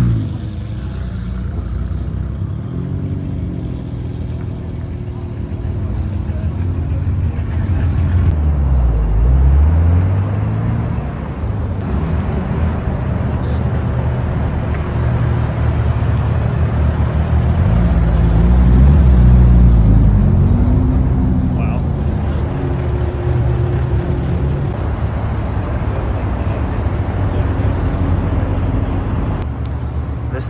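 A car engine running, its pitch rising and falling several times as it is revved.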